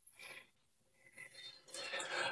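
Quiet room tone with faint, indistinct small sounds, and a soft breath near the end.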